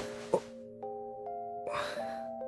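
Soft background music of held, bell-like notes, with new notes coming in about a second in and again shortly after.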